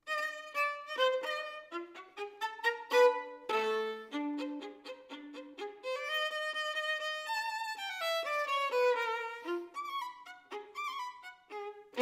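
Solo violin, bowed, starting suddenly out of silence with a quick run of short separate notes. A low note comes about three and a half seconds in, then longer held notes step downward around the middle, and quick short notes return toward the end.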